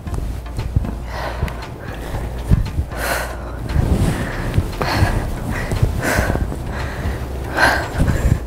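Background music, with a woman's short, forceful exhales coming roughly once a second from about three seconds in as she does dumbbell lunges and presses.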